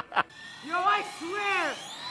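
A person's voice makes two drawn-out exclamations, each about half a second long and each rising then falling in pitch. A couple of sharp clicks come just before them at the very start.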